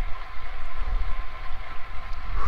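Wind buffeting a clip-on lapel microphone on a moving road cyclist, an uneven low rumble, with the hiss of road-bike tyres rolling on asphalt underneath.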